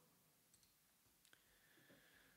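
Near silence, with a couple of faint computer mouse clicks; the clearer one comes just past halfway.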